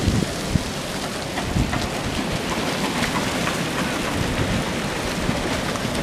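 River water lapping and splashing against a muddy foreshore, with wind buffeting the microphone in low gusts, strongest at the very start.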